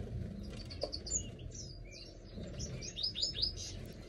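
Small birds chirping in short, high-pitched notes, ending in a quick run of falling chirps, over a steady low background rumble.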